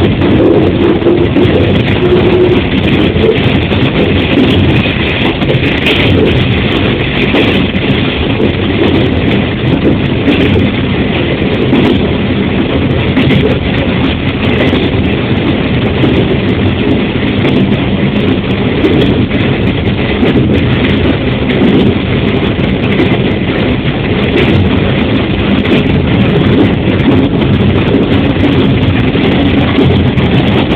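KiHa 40 diesel railcar under way, its diesel engine droning steadily under the wheel-on-rail noise, heard from inside the driver's cab, with occasional short clicks from the track.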